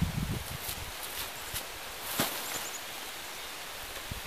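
Soft rustling and a few light footfalls on grass and dry leaves as a corn sack stuffed with rags is carried and set down, with a handful of small clicks, the loudest about halfway through.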